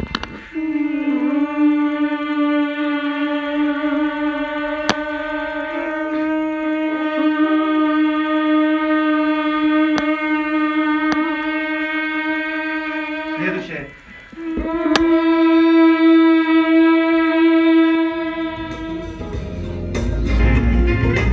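A voice holding one long, steady note as a vocal warm-up exercise. It breaks for a breath about fourteen seconds in, then holds the same note again for several seconds.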